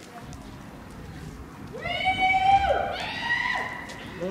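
Two long shouted calls from people, loud and drawn-out, starting about two seconds in, over a low background rumble.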